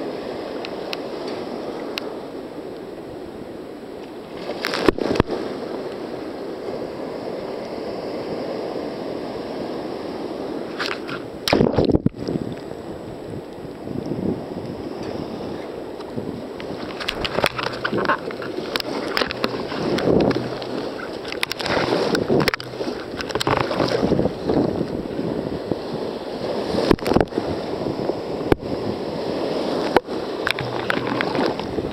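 Breaking surf and water sloshing against a sea kayak's hull as it is paddled through the waves, with sharp splashes about five and twelve seconds in and frequent splashing from about halfway on.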